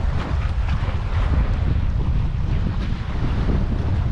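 Wind buffeting the camera's microphone: a loud, uneven low rumble that keeps on, on a windy day over choppy water.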